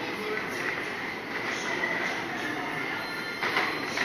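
Teacup ride in motion: the turntable and cups run with a steady high-pitched squeal over a rumbling mechanical noise, and a short clatter comes near the end.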